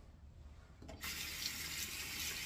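A bathroom sink tap turned on about a second in, its water running in a steady hiss.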